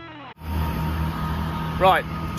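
A steady low engine hum in the open air, after a brief moment of near silence at the start. A man begins talking near the end.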